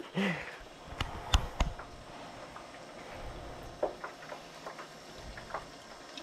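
Quiet room noise with three sharp clicks close together about a second in, then a few faint scattered taps.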